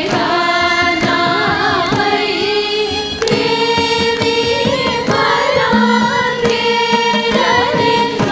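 Large group of female voices singing a Carnatic swarajati in unison, the pitch bending and gliding in ornamented phrases, over steady mridangam drum strokes.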